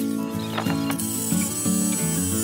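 Cordless DeWalt power tools running screws into a pine 2x4 block, a rattling mechanical whir of the drill and impact driver, over steady background music.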